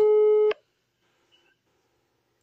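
A steady electronic beep tone that stops abruptly with a click about half a second in, followed by near silence.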